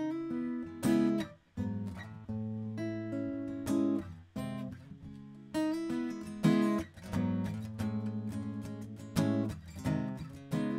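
Solo acoustic guitar strumming chords in a slow rhythm, a chord struck about once a second, some let ring and some cut short.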